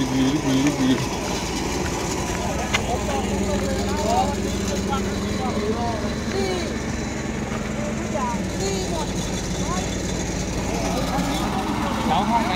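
Crane truck's engine idling steadily, with faint voices of people talking over it.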